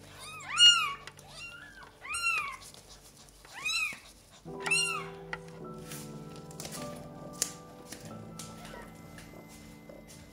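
Newborn kitten meowing: four short, high cries that rise and fall in pitch, all in the first five seconds, the first the loudest, with background music underneath.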